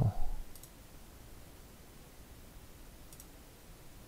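Computer mouse clicking: a short double click about half a second in and another near the end, over quiet room tone.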